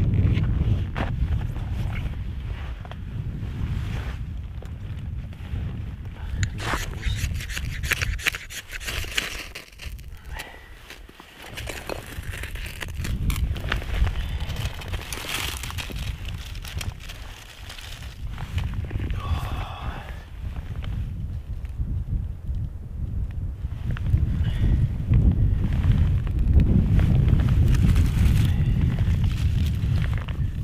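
Wind buffeting the microphone in a gusting low rumble, over irregular snaps, cracks and scrapes of dry birch sticks being handled and stacked for a fire.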